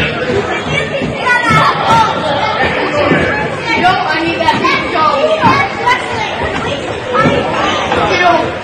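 Indistinct overlapping voices of people talking in a large gymnasium, echoing in the hall.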